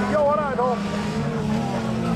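Engines of several rodeo-class autocross cars racing on a dirt track at a distance, a steady low drone.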